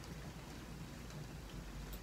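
Faint steady hiss of room tone, with no distinct sound events.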